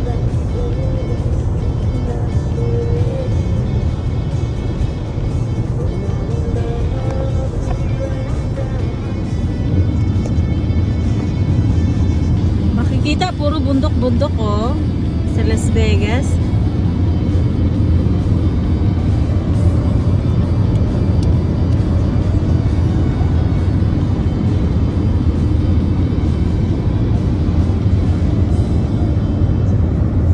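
Steady road and engine rumble heard inside a moving car's cabin, with faint music and a brief voice about halfway through.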